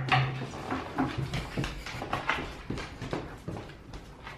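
Two dogs, a large husky-mix and a Dalmatian, moving about on a hardwood floor, their claws clicking and tapping irregularly. A brief low groan is heard at the very start.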